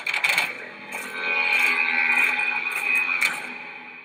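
Closing sound design of a TV series trailer: a sharp hit, then a held, shimmering high chord that swells and fades out near the end.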